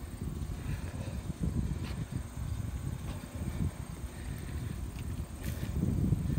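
Low, uneven rumble of wind buffeting the microphone of a handheld camera on a moving bicycle, with road noise and a couple of faint clicks.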